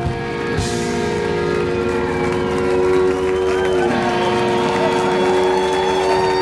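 Live rock band with guitars and violin holding a long sustained chord, with a drum hit about half a second in.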